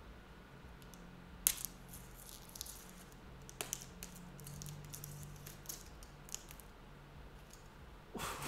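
Hands unwrapping and handling a packed parcel: scattered light clicks and crinkling rustles, with one sharper click about a second and a half in, over a faint low hum.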